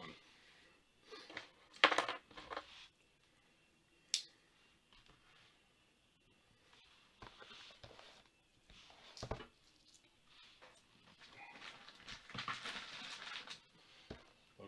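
A cardboard hobby box of trading cards being handled on a wooden desk: a knock about two seconds in and a sharp click about two seconds later, then soft scrapes, and a longer rustle near the end.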